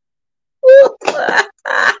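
A woman laughing, starting about halfway in: one voiced 'ha' followed by two breathier bursts.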